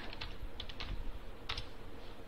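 Computer keyboard typing: a few scattered keystroke clicks, the sharpest about one and a half seconds in.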